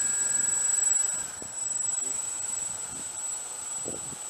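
Electric motors and propellers of a radio-controlled Junkers tri-motor model taxiing, making a steady high-pitched whine. A lower motor tone eases off a little over a second in, as the throttle comes back.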